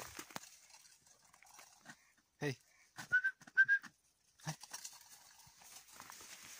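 A dog giving two short, high-pitched whines, with a brief low grunt a moment before and another shortly after, amid light rustling in dry brush.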